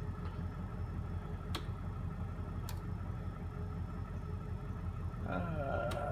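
Steady low hum of powered shop machinery with a faint, steady high whine, broken by a couple of sharp clicks from a computer keyboard being typed on.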